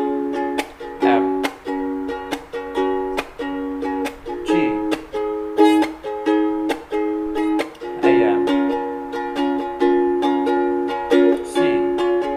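Ukulele strummed in a steady rhythm, cycling through the chords A minor, C, F and G.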